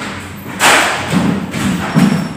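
A single dull thump about half a second in, fading out slowly, followed by a low steady musical tone.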